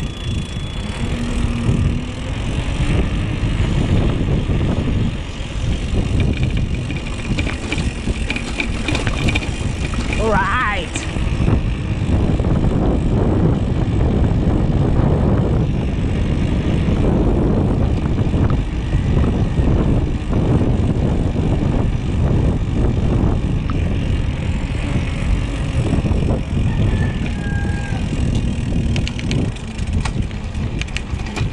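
Loud, steady wind rushing over an action camera's microphone while a mountain bike rolls along a paved road, with tyre rumble underneath. A brief rising whistle about ten seconds in.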